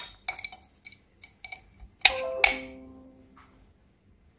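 A few light clicks, then two bright ringing chime notes about half a second apart that fade out over about a second.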